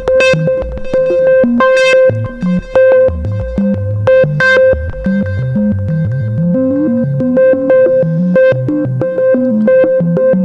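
Korg MS-20 analog synthesizer holding a steady note whose tone jumps to a new random brightness a few times a second. This is sample-and-hold of noise, clocked by the modulation generator's square wave, stepping the low-pass filter cutoff. The steps come at slightly uneven intervals while the clock rate and cutoff are being adjusted.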